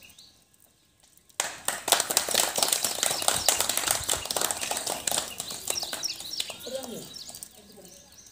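A small group of people clapping by hand. The clapping starts suddenly about a second and a half in and dies away after a few seconds.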